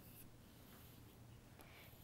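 Near silence: room tone, with faint contact sounds from a stylus on an interactive touchscreen board near the start.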